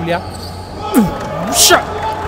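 Basketball shoes squeaking on a hardwood court during play: short squeaks about a second in and again near the end, with a sharp knock about a second in and a louder burst of hiss near the end.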